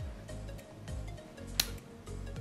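Background music with a slow beat, about one a second, and a single sharp snip of scissors about one and a half seconds in, cutting a dry twig.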